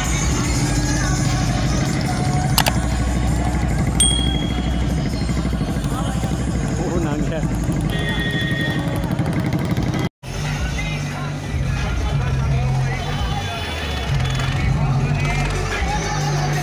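Loud music with singing playing from a modified tractor's speaker system, over tractor engines and road traffic. The sound cuts out for an instant about ten seconds in.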